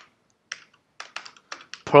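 Typing on a computer keyboard: a handful of short, unevenly spaced keystrokes.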